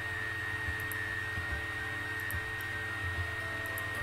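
Steady hum and hiss with a thin, constant high whine, and a few faint computer-mouse clicks as objects are picked.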